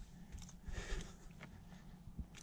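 Faint scuffing and a few light taps as a squirming burbot is held down and pushed straight along a plastic bump board, with a soft swish about a second in, over a low steady rumble.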